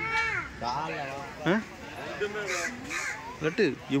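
Crows cawing with harsh calls over the chatter of people's and children's voices.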